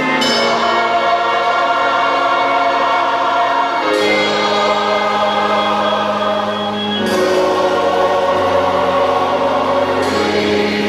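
Background gospel music: a choir singing long, held chords that change about four and seven seconds in.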